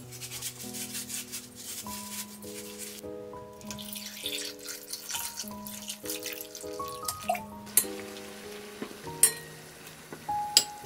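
Soft instrumental background music with gentle sustained notes over water splashing and pouring into a glass bowl of lemons as they are washed. Two sharp clicks come near the end.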